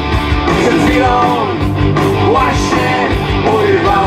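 Punk rock band playing live, with a steady drum beat, bass and electric guitar, and a melody line that slides up and down in pitch.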